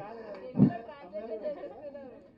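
Quiet chatter of several voices in a large hall, with one short low thump just over half a second in.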